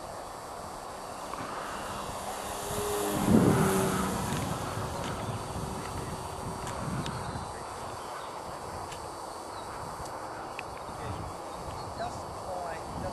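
Electric F3A aerobatic model (Hyperion Katana on a Hyperion Z4020-14B brushless motor) flying past, its motor and propeller swelling to a peak about three seconds in and then fading over a steady outdoor background.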